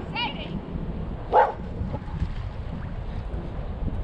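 A dog barks once, about a second and a half in, over steady wind noise on the microphone.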